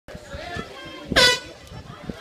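Swim race start horn: one short, loud blast about a second in that sends the swimmers off the edge.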